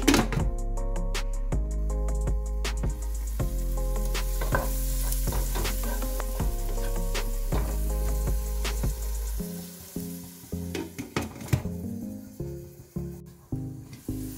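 Onion and tomato masala sizzling in a nonstick pan while it is stirred, with short clicks and scrapes of the spatula against the pan. Background music plays underneath, and its bass drops out about two-thirds of the way through.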